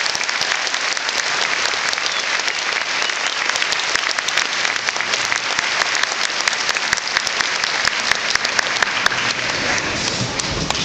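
An audience applauding: dense, steady clapping from many hands.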